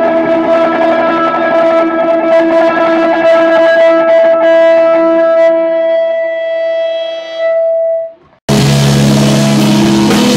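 Electric guitar with distortion playing a picked figure over a ringing note, then letting a note sustain and fade. About eight seconds in the sound cuts off abruptly and loud full-band rock starts, with bass and guitars.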